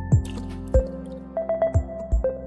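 Electronic background music: a deep kick drum beat with short high ticks over held synth tones.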